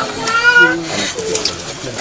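Crowd of people talking at once, with a high-pitched, wavering voice crying out during the first second.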